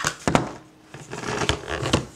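Handling noise: a few sharp knocks and clicks with rustling between them, as the camera is moved about and set down on a hard surface.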